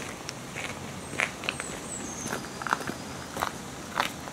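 Irregular footsteps on a path strewn with fallen leaves.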